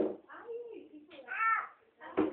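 Short, high-pitched wordless vocal sounds, each arching up and down in pitch, with a sharp click right at the start.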